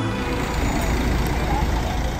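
Outdoor ambience: a steady low rumble, with faint voices of a crowd.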